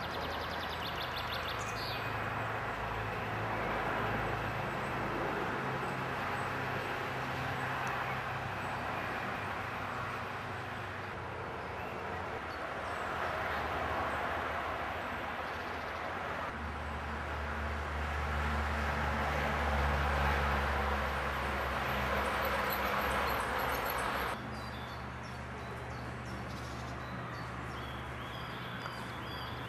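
Outdoor ambience: a steady rushing background noise with a low rumble and a few faint bird chirps. The sound changes abruptly about 24 seconds in, where the rumble and rushing drop away.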